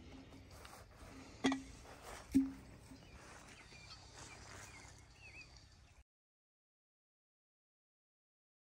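Two sharp knocks a little under a second apart, each with a short ring, over faint outdoor background with a few bird chirps; the sound cuts off to total silence about six seconds in.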